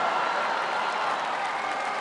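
Theatre audience applauding and cheering, a steady wash of clapping.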